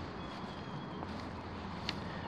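Low, steady outdoor background noise with no clear source. A faint thin high tone sounds for most of the first second, and there is a small click near the end.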